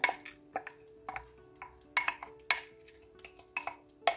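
A kitchen utensil clinking against a cooking pot of simmering tomato sauce: about six short, sharp knocks at uneven intervals.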